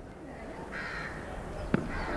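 Crows cawing, with one sharp click a little before the end.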